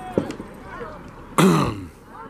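A sharp knock shortly after the start, then a loud, rough vocal burst from someone close to the microphone about one and a half seconds in, falling in pitch and lasting under half a second. Distant voices from the field and sideline carry on throughout.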